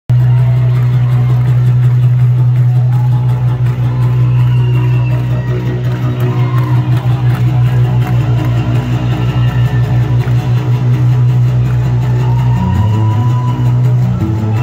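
Loud live rock band music from a concert PA, heard through a phone's microphone in the crowd. A heavy held bass note dominates, with guitar over it and a pulsing rhythm, and the low note shifts near the end.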